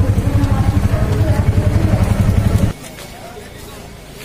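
Auto-rickshaw's small single-cylinder engine running, heard from inside the cab with street voices over it. It cuts off abruptly about two-thirds of the way through, giving way to quieter street background.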